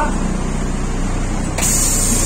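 Karosa ŠL 11 bus's diesel engine idling with a steady low rumble. About one and a half seconds in, a loud steady hiss of compressed air starts from the bus's air system.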